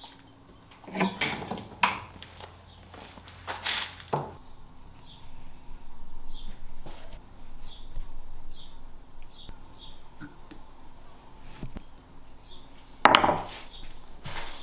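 Metal tools and hydraulic cylinder parts clinking and knocking as they are handled on a workbench: a few sharp knocks in the first few seconds and a loud one near the end.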